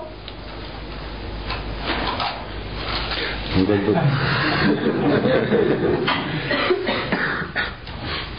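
Room noise with scattered clicks and rustling, then an indistinct voice speaking from about halfway in.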